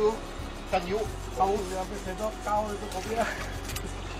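People talking in short, scattered phrases over a steady low hum.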